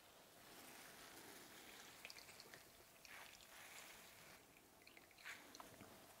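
Very faint sounds of grated raw potatoes being wrung out in a cloth kitchen towel, with potato water dripping into a glass bowl. It is close to silence, with a few soft squeezes along the way.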